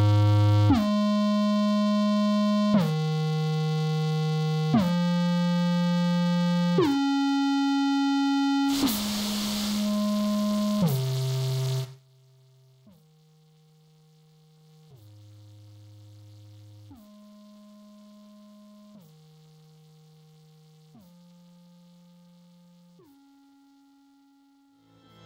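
Aphid DX four-operator FM software synthesizer playing a run of held notes, each about two seconds long and each at a new pitch. About nine seconds in, a hiss joins the notes for some three seconds. Around twelve seconds the sound drops sharply to a faint level, and the notes carry on quietly.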